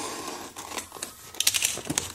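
Cardboard shipping box being handled and pulled open: cardboard and paper rustling and crinkling, with a short burst of sharp crackles about a second and a half in.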